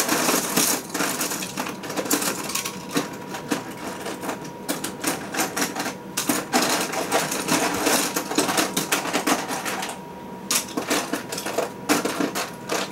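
Small plastic toy pieces clattering as a hand rummages through a storage bin: a dense, continuous run of small clicks, with a short lull about ten seconds in.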